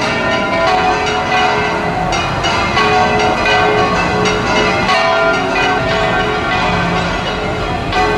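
Church tower bells ringing in a full peal, a bell swung round in the belfry, its repeated strikes overlapping into a continuous wash of ringing tones.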